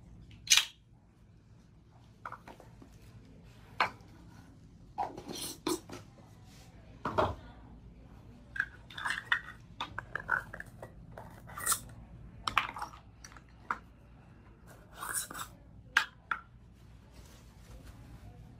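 Small plastic acrylic-powder jars and their lids clicking and clacking as they are handled and put away, with paper towel rustling: about a dozen short, irregular knocks and scrapes, the sharpest about half a second in.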